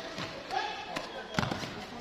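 A few sharp slaps and thuds of hands and feet striking foam training mats during a group drill, the loudest about two-thirds of the way through, under the chatter of many voices in a large hall.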